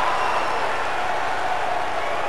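Steady crowd noise from a large arena audience, an even wash of voices with no single voice standing out.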